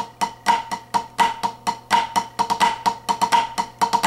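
Drumsticks playing flam accents on a drumhead practice pad, a quick triplet run of flams and taps with drags added on the third beat. Each stroke rings at one pitch.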